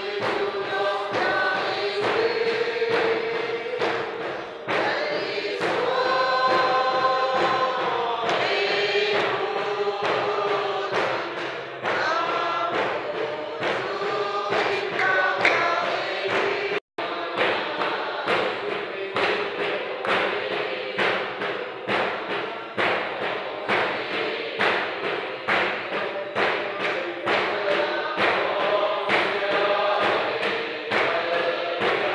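A congregation of women and men singing a hymn together, with a steady thumping beat keeping time under the voices. The sound cuts out for an instant about seventeen seconds in.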